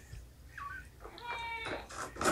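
A cat meowing: a short high chirp about half a second in, then a high-pitched meow lasting about half a second.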